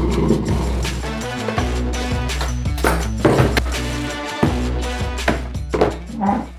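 Background music with a deep bass line and a steady beat.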